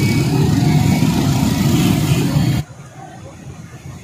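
Loud, steady motor-vehicle engine and traffic noise that cuts off abruptly about two and a half seconds in, leaving a much quieter outdoor background.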